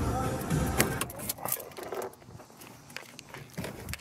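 Background music fading out over the first second or so, then a few sharp clicks and rattles of someone handling things inside a parked car as he gets ready to step out.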